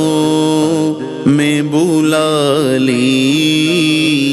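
Male voice singing an Urdu naat without instruments, holding long notes with small wavering ornaments.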